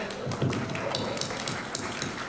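Applause: many hands clapping in a hall.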